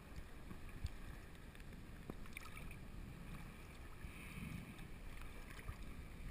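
Faint sloshing and lapping of sea water against a GoPro camera housing held at the waterline, with a light knock about a second in.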